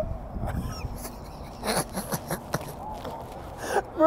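A man's breathy, wheezing laughter in a few short bursts about halfway through, over a low steady outdoor rumble.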